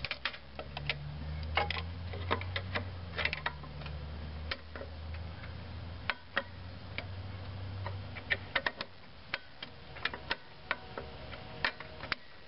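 Drum-brake star-wheel adjuster being turned with a flat-blade screwdriver: irregular sharp metal clicks as the blade catches the wheel's teeth. It is being wound to shorten the adjuster and back off the brake shoes. A low hum runs underneath and fades out about eight seconds in.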